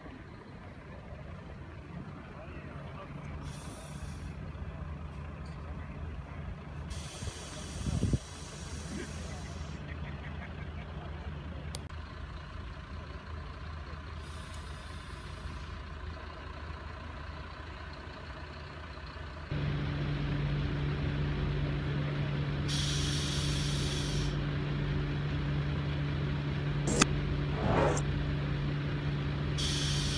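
Stopped RegioJet railcar's engine idling with a steady low hum, and short hisses of compressed air every few seconds. A single thump comes about eight seconds in, and the hum turns louder and steadier about two-thirds of the way through.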